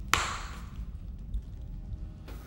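A single sharp hit just after the start, with a hissing tail that fades over about half a second, over a steady low rumble.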